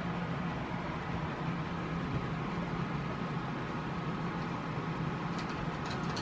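Steady low mechanical hum of room background noise, with a few faint clicks near the end.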